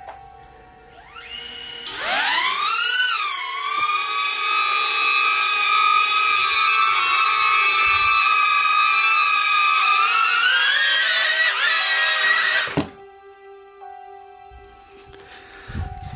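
DJI Neo mini drone's four small motors and ducted propellers spinning up with a rising whine, then a loud high-pitched whine with many overtones that wavers, holds steady, climbs in pitch as the drone works harder, and cuts off suddenly a few seconds before the end.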